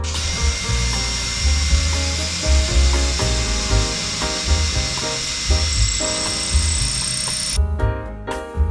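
Electric power drill running continuously overhead for about seven and a half seconds, its high whine rising slightly near the end before it cuts off suddenly.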